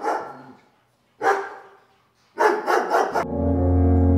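A dog barking: three loud barks, each trailing off in a long echo. About three seconds in, a steady low droning tone starts and holds.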